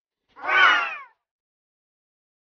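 A single short call lasting under a second, its pitch falling at the end, alone on an otherwise silent track.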